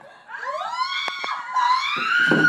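A person's high-pitched scream that rises and is held, followed near the end by a second drawn-out high cry. Two sharp knocks sound about a second in.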